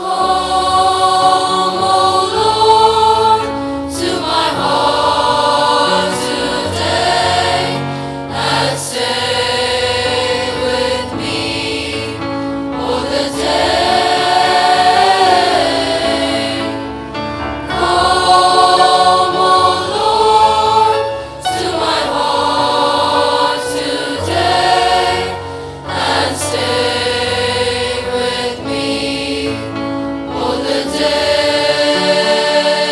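Choir singing a hymn over a sustained musical accompaniment, with held notes that rise and fall; it starts abruptly.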